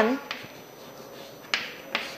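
Chalk writing on a chalkboard: a few light taps of the chalk and a short scratchy stroke about one and a half seconds in.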